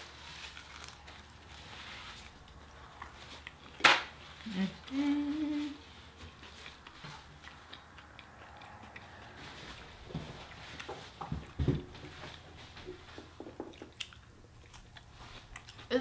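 Quiet eating of crispy fried chicken: scattered chewing and small crunches, with one sharp click about four seconds in, followed by a short hummed "mm" of enjoyment. A couple of soft low thumps come near the end.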